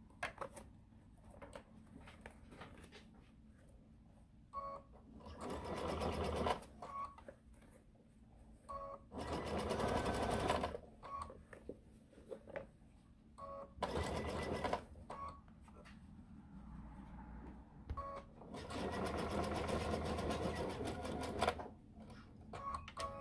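Electric sewing machine stitching in four short runs, each a second to three seconds long, with the needle's rapid even chatter, as thick quilted layers are sewn an inch or so at a time. Short beeps come from the machine between the runs.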